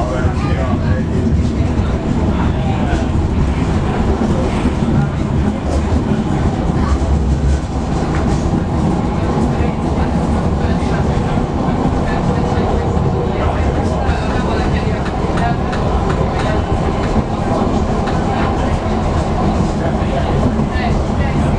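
Inside a moving passenger train carriage: the steady rumble of the wheels on the rails, with scattered clicks from the track.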